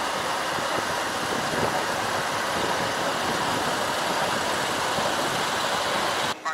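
Steady rushing noise of a moving motorcycle: wind on the microphone mixed with engine and road noise, without a clear engine note.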